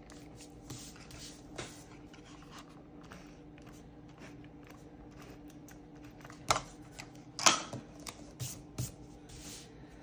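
Correction tape dispenser swiped across planner paper with soft rustles, then paper handling, with a few sharp clicks and taps a little after the middle.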